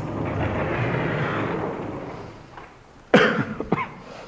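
A chalkboard being wiped clean with a duster: a steady rubbing sound for about two and a half seconds that fades out. It is followed about three seconds in by a short cough.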